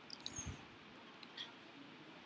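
Faint computer keyboard keystrokes: a quick run of several clicks with a soft thump, then one or two more clicks about a second later.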